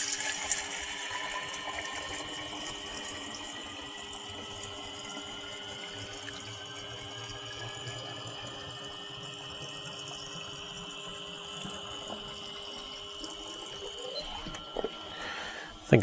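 Water from a Topsflo TD5 24-volt DC brewing pump pouring through a stainless tube into a one-gallon glass jug. A tone rises slowly in pitch as the jug fills, over the pump's steady whine.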